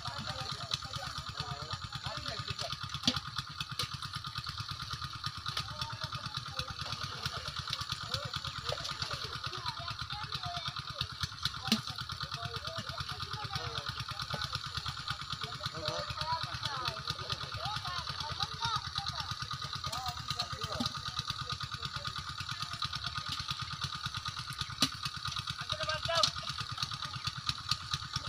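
A small engine running steadily with a fast, even pulse, under scattered distant voices of people talking.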